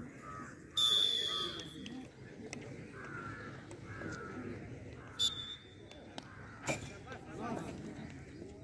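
Referee's whistle blown about a second in, one steady shrill blast lasting about a second, then a short toot about five seconds in, signalling penalty strokes. Under it run background crowd chatter, cawing calls and a few sharp knocks.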